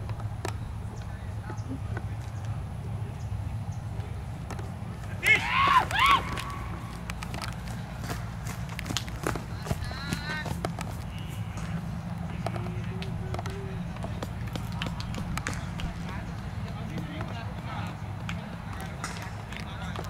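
Outdoor ambience of distant, indistinct voices over a steady low rumble, with a brief loud high-pitched cry about five seconds in.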